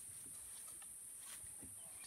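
Faint rustling, soft snaps and a few dull thuds of an African elephant moving and feeding in brush close by, over a steady high hiss.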